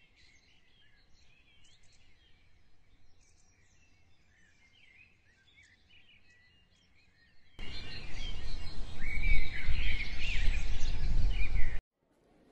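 Birdsong: many small birds chirping over one another, faint at first. About seven and a half seconds in, the chirping becomes much louder, over a low rumbling noise, then both cut off suddenly just before the end.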